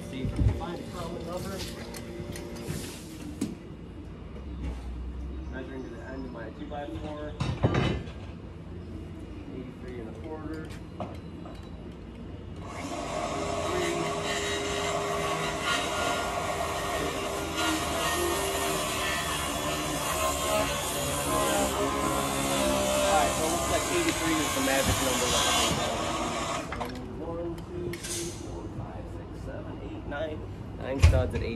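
Faint, indistinct talking with a few knocks. About thirteen seconds in, a loud, steady machine noise starts suddenly and runs for about fourteen seconds before cutting out.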